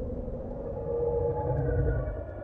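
Electronic logo sting: sustained synthesized tones held over a deep rumble, swelling slightly about a second in.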